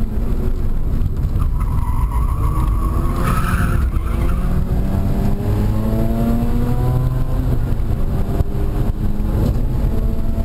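A 2005 Mazda RX-8's Renesis two-rotor rotary engine under hard track driving, heard from inside the cabin, with the tires squealing through a corner in the first few seconds. The engine then pulls steadily up through the revs, and the rise breaks off for a gear change near the end.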